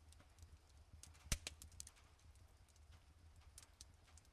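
Near silence: a faint low hum with scattered small clicks, one sharper click about a second in.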